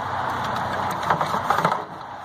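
A steady engine-like hum, like a motor idling, with a few light clicks and rustles of polybraid and a plastic reel being handled, about a second in.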